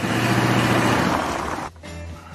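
A car driving close by, engine and tyre noise, which cuts off abruptly near the end.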